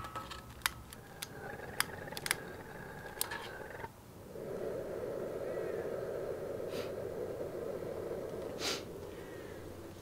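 Propane burner under a brew kettle being relit: a handful of sharp clicks from a long lighter, then about four seconds in the burner catches and runs with a steady low rush of flame.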